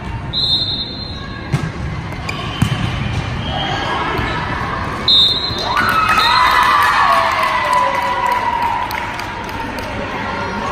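Volleyball rally in an echoing gym: the ball is struck and thuds a few times in the first few seconds, and a short high whistle sounds near the start and again about halfway. Spectators then shout and cheer for a few seconds.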